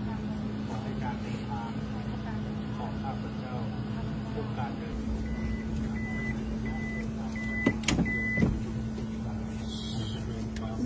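A minivan's electronic warning chime beeping five times at an even pace while its sliding side door stands open, with a few sharp knocks near the end as people climb into the cabin. A steady low hum runs underneath.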